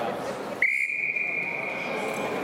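Wrestling referee's whistle, one long steady blast beginning about half a second in, signalling the start of the bout.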